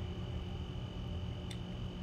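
Room tone: a steady low hum with a constant thin high-pitched whine, and one light click about one and a half seconds in.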